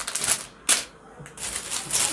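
Clear plastic bag of semolina crinkling as it is handled and set down on a table, with one sharp knock less than a second in and a few softer rustles after.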